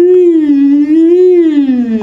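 A man's voice singing one sustained round, hooty vowel in a slow glide, rising and falling twice and ending low. The sung pitch tracks the vowel's first formant, producing hoot timbre, a very heady, round color.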